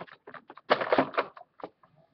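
Handling noise close to the microphone: a quick cluster of clicks and knocks just under a second in, followed by a few fainter taps.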